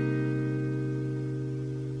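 Electric guitar letting a C minor 7 barre chord at the third fret ring out, one sustained chord fading slowly.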